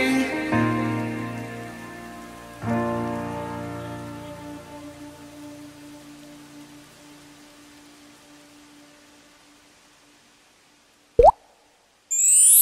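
Background music ending: a held chord struck about two and a half seconds in fades away slowly to near silence. Near the end, a short, loud rising sound effect.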